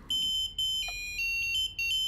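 Particle Internet Button's piezo buzzer playing a doorbell theme tune: a short run of high electronic beep notes that step between pitches, with a brief break near the end.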